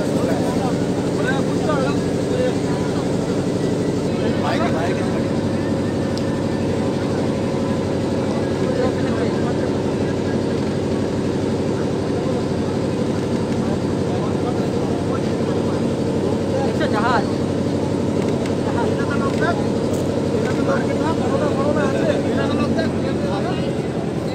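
Ferry launch's diesel engine running with a steady, even drone, heard from on board. Passengers' voices come through faintly now and then.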